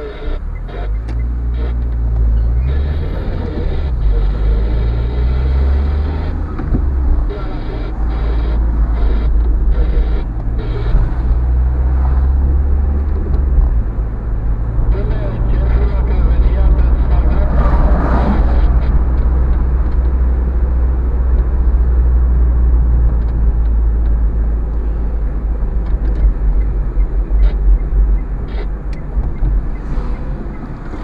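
Car engine and road noise heard from inside the cabin while driving, a steady low drone that shifts in pitch as the car speeds up and slows. About eighteen seconds in there is a brief louder rush of noise as an oncoming tram passes.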